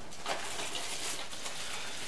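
Soft rustling and handling of packaging: cardboard box and a plastic wrap bag moved about by hand, with a few faint ticks.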